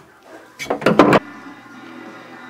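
A tool scraping and rattling against a rusty floating cage nut in its cage in a car's steel floor pan: a few short scraping strokes just over half a second in, which cut off suddenly and leave a faint steady hum.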